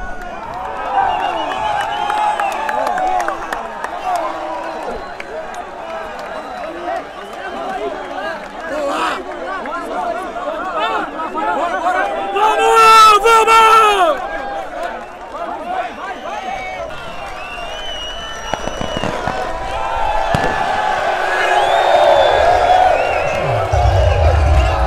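Celebrating crowd of football players and supporters, many voices shouting and chanting at once, with one loud, high shout close to the microphone about halfway through.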